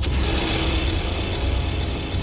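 A handheld gas torch bursts alight with a sudden hiss and keeps burning with a steady rushing hiss, over a low drone.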